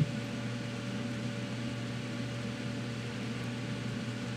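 A steady low hum with an even hiss over it, as of a fan or appliance running in a small room, with a single short click at the very start.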